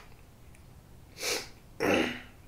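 Two short, sharp breaths through the nose from a man pausing between sentences, a softer one just past the middle and a louder one near the end.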